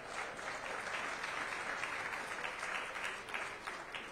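Audience applauding: a steady clatter of many hands clapping that dies away near the end.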